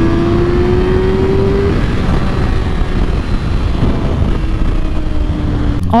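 Kawasaki ZX-6R 636's inline-four engine under way, its note rising gently for the first couple of seconds. It then falls gently toward the end as the bike slows, all over a steady rush of wind and road noise.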